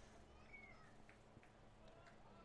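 Near silence: faint ballpark ambience between pitches, with one brief, faint, high, falling glide about half a second in.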